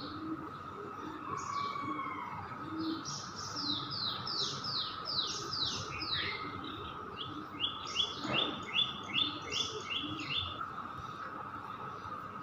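Songbird chirping: a run of quick downward-sweeping notes, then a fast trill of short repeated notes in the second half.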